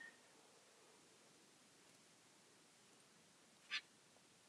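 Near silence, with one brief small click near the end as glass seed beads and a beading needle are handled.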